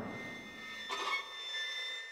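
Faint, steady high-pitched ringing tones over a low hush, with a brief faint swell about a second in.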